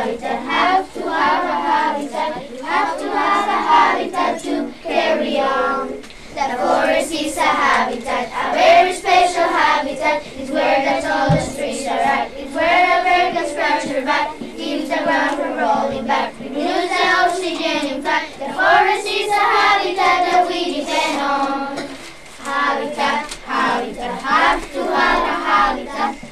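Children singing a song together in chorus, running through a verse about the forest as a habitat.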